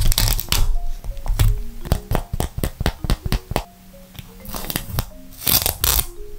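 Crinkling and rustling of tape-covered paper cutouts being handled, in sharp crackly clicks with denser bursts at the start and near the end, over soft background music with a light plucked melody.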